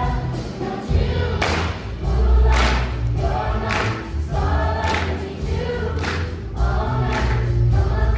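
A large youth show choir singing together over loud instrumental accompaniment, with a heavy, steady beat accented about every second and a bit.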